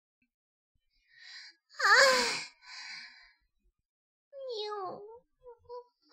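A man's high falsetto moaning: a breathy sigh about a second in, a louder moan that glides up in pitch about two seconds in, then another breath and a quieter, wavering moan near five seconds.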